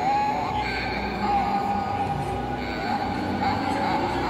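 Push-button talking skull decoration playing its recorded voice through a small built-in speaker, a wavering, speech-like sound over hall crowd noise.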